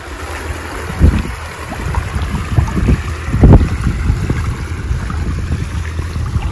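Wind buffeting the microphone in irregular gusts, strongest about a second in and again around the middle.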